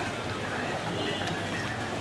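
Indistinct voices in the background over a steady wash of noise, with a few faint clicks.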